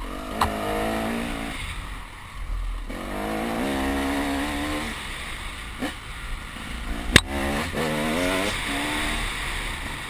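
KTM 300 two-stroke enduro motorcycle engine revving in three bursts, its pitch rising with each one as the rider accelerates along a dirt trail. A few sharp knocks cut through, the loudest about seven seconds in.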